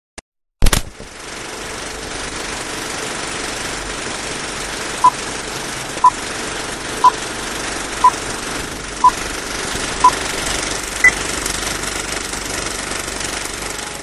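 Film projector sound effect: a click, then a steady rattle and hiss. Over it come six short beeps at one pitch, a second apart, then a single higher beep, like a countdown start signal.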